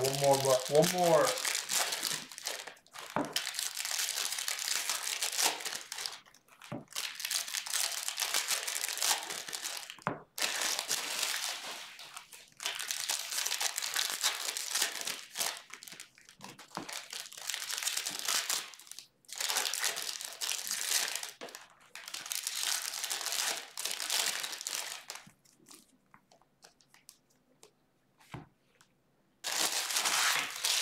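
Foil trading-card pack wrappers being torn open and crumpled, in repeated crinkling bursts of one to three seconds with short pauses between, sparser and quieter near the end. A brief voice sound comes right at the start.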